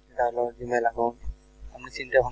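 A person speaking over a steady low electrical hum, with a click near the end.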